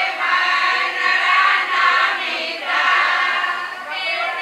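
A group of women's voices singing together in held, sung phrases.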